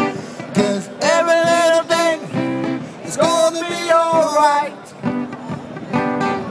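Amplified acoustic guitar strummed under a man's singing, with two long held sung notes.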